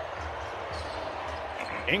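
Basketball being dribbled on a hardwood court, with irregular low bounces over a steady, even background of arena sound and a few short high squeaks.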